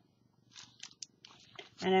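Soft rustling and crinkling of plastic packaging and an acetate sheet being handled, in a few short scuffs with a brief click about a second in.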